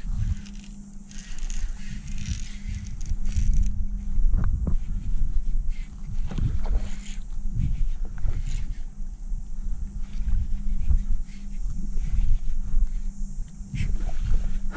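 Wind rumbling unevenly on an action-camera microphone over open water, with a steady low hum underneath and a few short knocks scattered through.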